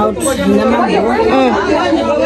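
People talking, with voices overlapping in chatter.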